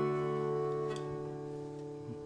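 A strummed guitar chord left ringing, slowly fading away.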